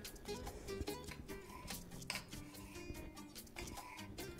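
Soft background music with steady sustained notes, over a few faint, irregular taps of a chef's knife striking a stone cutting board as a serrano pepper is sliced thin.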